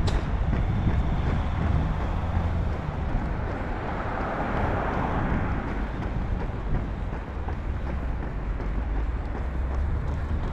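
Road traffic noise, with a car passing that swells and fades about four to six seconds in, over a low steady rumble.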